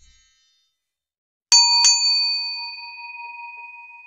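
A bell sound effect struck twice in quick succession about a second and a half in, about a third of a second apart. It keeps ringing in clear tones that slowly fade: the notification-bell ding of a subscribe-button animation.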